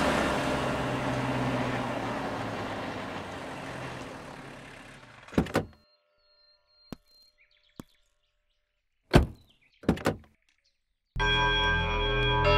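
A broad rush of noise fades away over the first few seconds. Then come a series of vehicle door thuds: a pair, a few light clicks, a loud slam about nine seconds in and two more just after. Music with bell-like tones comes in near the end.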